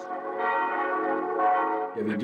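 Church bells ringing, a sustained wash of many overlapping steady tones.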